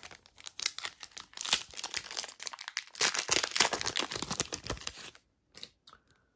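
Shiny Upper Deck hockey card pack wrapper being torn open and crinkled by hand: a dense crackling for about five seconds, with a short lull partway through. It stops suddenly, and one small click follows near the end.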